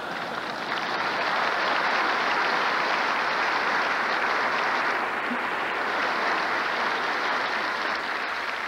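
Large theatre audience applauding. The applause swells over the first second, holds steady and eases slightly near the end.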